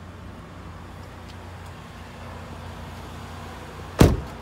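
The 2015 Nissan Pathfinder's engine idling, a steady low hum. A sharp thump comes right at the end.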